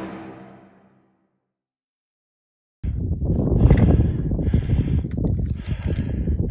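Orchestral background music fades out, and after about two seconds of silence live sound cuts in: wind rumbling on the microphone with heavy breathing, a hissing breath about once a second, from a hiker working up a steep slope.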